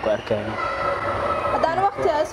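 A man and a woman talking in Somali, with short phrases near the start and end, and a steady, high held tone sounding behind and between the voices.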